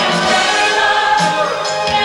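A chorus of voices singing a musical theatre ensemble number over a band accompaniment.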